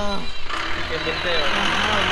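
An SUV passing close by on the road: a wash of engine and tyre noise that swells about half a second in, over a low steady engine hum.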